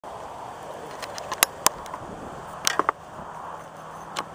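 A handful of sharp, irregular clicks and knocks, loudest about a second and a half in and again near three seconds, over a steady hiss.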